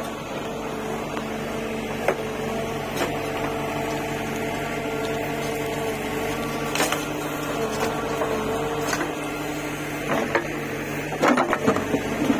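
Bull backhoe loader's diesel engine running under load with a steady hydraulic whine as the rear bucket digs soil and dumps it into a trolley. Scattered sharp knocks and clanks from the bucket and arm come through, thicker near the end.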